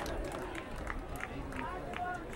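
Faint, distant voices of players and spectators calling out across an outdoor soccer field, several short shouts over a low steady stadium background.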